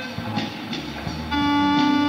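Live rock band playing, with held notes over drums. It drops quieter for about a second, then a loud held note comes in about a second and a half in.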